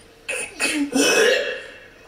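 A man clearing his throat: two short throaty sounds, then a longer rasping one about a second in.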